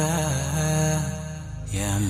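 Nasheed singing over a low sustained drone: a held vocal note trails off past the middle, and the next sung phrase begins near the end.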